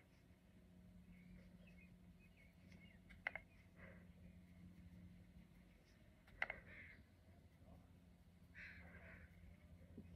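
Near silence: room tone with a faint low hum, broken by a few soft clicks, about three and six and a half seconds in.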